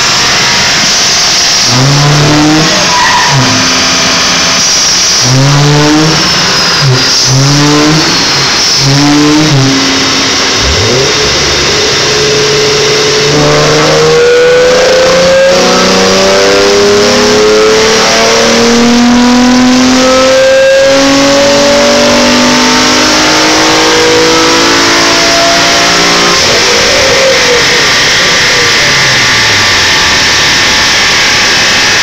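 Infiniti G35's V6 engine revved while it is being tuned: a run of short throttle blips over the first ten seconds, then a long, slowly climbing rev held for about fourteen seconds before it drops back to idle near the end.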